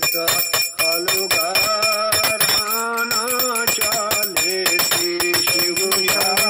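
A voice singing a devotional Hindu hymn while a small bell is rung rapidly and without a break, its ringing tones held high above the singing.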